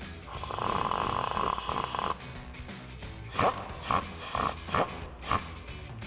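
Compact cordless impact wrench driving a 10 mm socket to tighten bracket bolts. It makes one run of about two seconds, then about five short trigger bursts as the bolts are snugged down.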